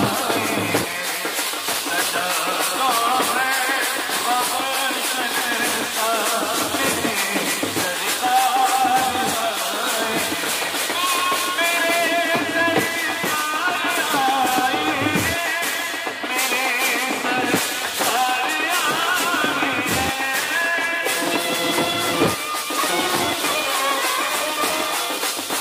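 Live procession band music: marching drums keep a steady beat under a wavering melody line.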